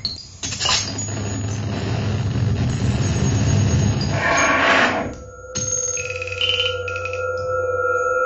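Live electronic music played from a laptop and hand controller: a dense, noisy texture over a low hum that swells about four seconds in and drops out briefly just after five seconds, then gives way to steady held ringing tones.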